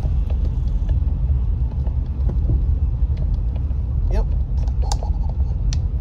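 A car driving slowly, heard from inside the cabin with the windows partly down: a steady low rumble of engine and tyres.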